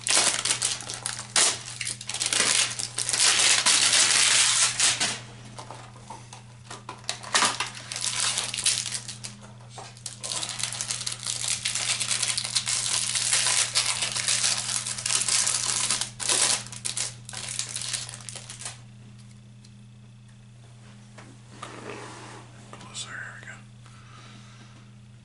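Plastic wrapper and cardboard of a baseball card hanger box crinkling and tearing as it is opened, in two long stretches of loud rustling, with quieter handling in the last few seconds.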